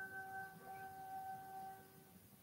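Faint background music: a single held note with overtones that fades out near the end.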